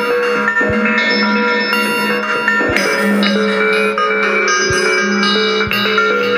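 Instrumental synthpop played on iPad synthesizer and drum-machine apps. Layered synth notes change every half second or so over a sustained low note, with a low beat about once a second.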